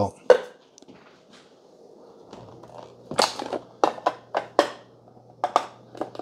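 Clicks and light taps of coffee grinders' grounds containers being handled on a stone countertop: one sharp click just after the start, then a quick run of taps from about three to five and a half seconds in.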